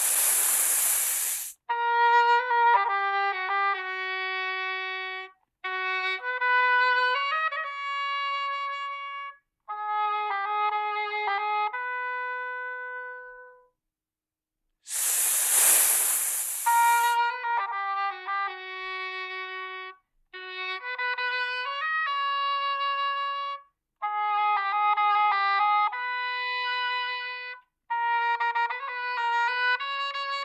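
Cartoon snake hissing twice, a loud hiss at the start and another about halfway through. After each hiss a small wind instrument, horn-like pipe, plays a tune in short phrases with pauses between them.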